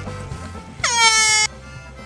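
Background music, with one loud horn blast about a second in. Its pitch drops at the start, then it holds for about half a second and cuts off abruptly.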